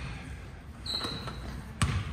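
A basketball bounced once on a gym floor near the end, the first bounce of a player's dribble up the court, with a brief high squeak about a second in.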